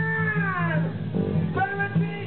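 Live band playing, with acoustic guitars and bass guitar: a singer holds one long note that slides down in pitch and fades out, then begins the next line near the end.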